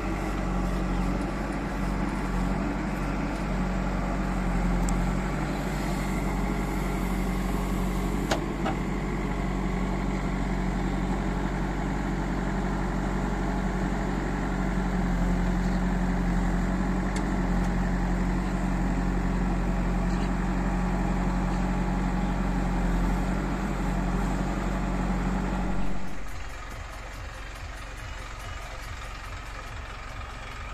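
Diesel engine of a JCB 3DX backhoe loader running steadily under load as it digs and scoops soil. About 26 seconds in, the sound drops suddenly to a quieter engine idling.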